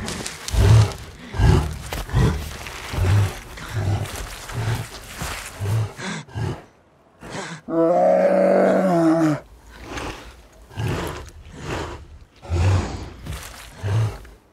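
A grizzly bear's heavy, rhythmic breathing and grunting, a little more than one breath a second, from a film's bear-attack scene. After a brief silence comes one long, slightly falling groan, and then the breathing resumes.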